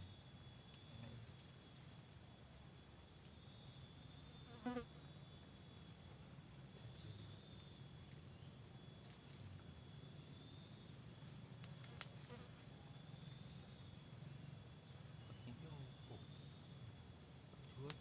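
Faint, steady insect chorus: a continuous high buzz with a wavering tone beneath it. About five seconds in there is one brief, louder knock, and a sharp click comes near twelve seconds.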